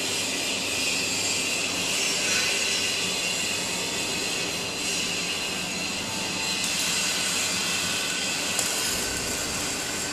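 Steady industrial noise of a welding workshop: a continuous hiss with faint, steady high tones running through it.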